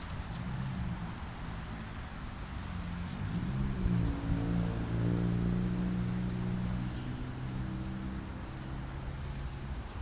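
Outdoor rumble of wind on the microphone, with a steady motor-vehicle engine hum that swells from about three seconds in, is loudest in the middle and fades near the end.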